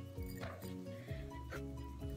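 Background music: held chords over a low bass, with the chord changing a couple of times and a soft hit about half a second in.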